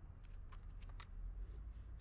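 Quiet outdoor background: a faint low rumble with a few light clicks.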